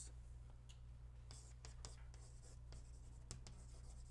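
Chalk writing on a blackboard: faint, scattered taps and scratches as the chalk is drawn stroke by stroke, over a steady low room hum.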